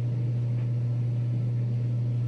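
A steady low hum, unchanging, with nothing else standing out above it.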